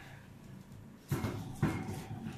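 About a second of quiet, then a sudden burst of rustling and knocking with a sharper knock about half a second later: the sound of people shifting and handling equipment at close range.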